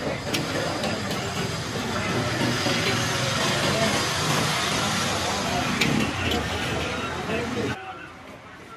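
Steady, noisy din of a busy street food stall with people talking over it; it cuts off abruptly near the end.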